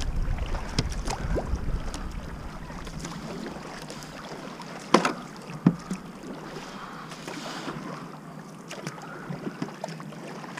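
Kayak paddle strokes and dripping, splashing water on a calm river stretch, recorded close up from the boat, with many small splashes and clicks. Wind buffets the microphone in the first two seconds, and two sharp knocks come about halfway through.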